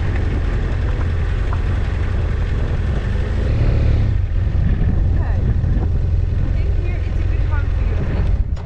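Wind buffeting the microphone over the running BMW F800GS parallel-twin motorcycle engine as the bike rolls slowly on a gravel track. The upper hiss eases about halfway through, leaving the low, steady wind rumble.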